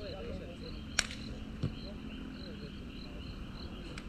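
Insects chirping in a steady pulsing chorus, about four chirps a second, over faint distant voices of players. A sharp knock about a second in and a duller thump half a second later stand out.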